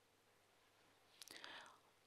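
Near silence, then a little past the middle a brief, faint whisper from a woman's voice close to a handheld microphone.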